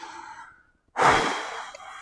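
A man's single audible breath, like a sigh, starting about halfway through and fading over about a second.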